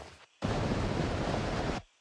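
A steady, even rushing hiss that starts suddenly and cuts off suddenly after about a second and a half.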